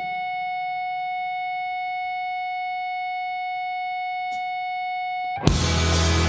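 Electric guitar holding a single distorted note that sustains at an even level without fading. About five and a half seconds in, the full rock band comes in loudly with drums, bass and guitars.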